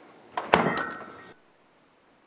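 Refrigerator door swung shut with a knock, the glass bottles in its door shelves clinking and ringing briefly. The sound cuts off abruptly about a second and a half in.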